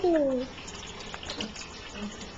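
Water from a kitchen tap running steadily into a steel sink.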